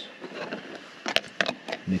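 A spoon and food containers clinking against a bowl: a quick run of about five sharp clicks and taps a second or so in.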